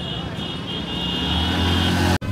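Street traffic, with a motor vehicle engine growing louder as it comes close near the end.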